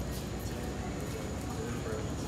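A dog's claws and a person's footsteps tapping on a bare concrete floor, over a steady low rumble of background noise.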